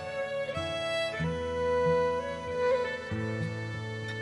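Slow instrumental music with a violin carrying held notes over plucked guitar.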